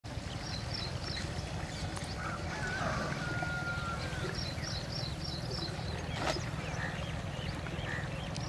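Steady low rumble, with a small bird chirping in quick runs of four or five notes several times and a short whistle-like note. A single knock comes about six seconds in.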